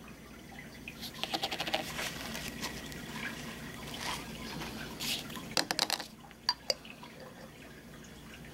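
Clear-coat liquid being poured from a plastic bottle into a paper cup, glugging in a quick run of pulses about a second in. Several sharp clicks and taps follow later.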